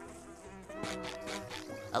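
Cartoon sound effect of flies buzzing, starting a little way in, over soft background music.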